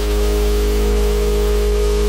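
Dubstep track: a loud, sustained deep sub-bass note under a hissing noise layer and a few held synth tones, with an engine-like growl to it.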